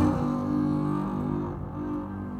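Live contemporary chamber-ensemble music: a sudden loud attack right at the start, then sustained low notes with bowed low strings prominent.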